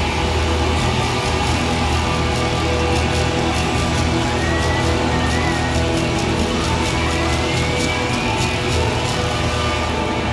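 Live rockabilly band playing an instrumental passage: upright double bass, electric guitar and drums, with a steady bass line under regular drum hits. A thin high tone glides upward twice, around the middle and again near the end.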